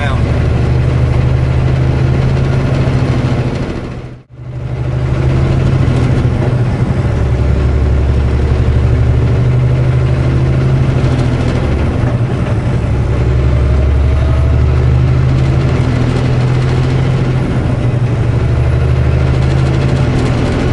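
Semi-truck diesel engine and road noise heard from inside the cab while driving, a steady low drone. About four seconds in the sound briefly fades out and back in.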